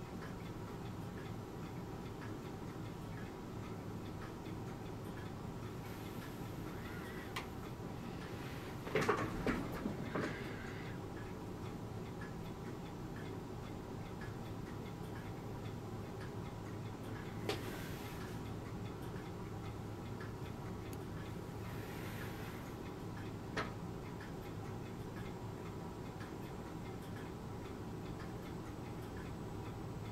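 Quiet workbench room tone: a steady low hum with faint regular ticking. A few light clicks, and a short rustle about a third of the way in, come from steel tweezers handling tiny plastic parts on blue tack.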